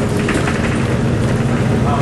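Steady engine and road rumble heard from inside a moving vehicle's cabin.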